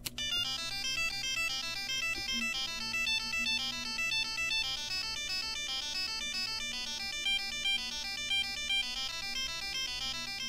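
BBC micro:bit playing a tune as a rapid, even stream of buzzy, ringtone-like electronic notes, amplified by a PAM8403 class-D amplifier through two small speakers. A faint steady low hum sits beneath the notes.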